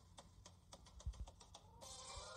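Faint rapid clicking, about six clicks a second, over a light hiss, from an audio clip playing back in a phone music app. Near the end a louder sound with several pitched tones starts.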